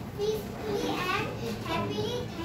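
Children's voices talking, the words unclear.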